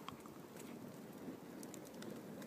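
Wood fire burning in a fire pit, faint, with scattered small crackles and pops.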